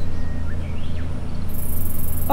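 Outdoor ambience: a steady low rumble throughout, a few faint chirps near the middle, and a high hiss that comes in about one and a half seconds in.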